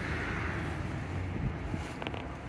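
Wind on the microphone: a steady low rumble with a soft hiss.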